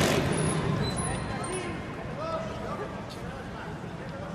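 Reverberant indoor arena noise: a sharp burst right at the start as the trials motorcycle hops up onto a rock, then a steady hum of crowd chatter and distant voices.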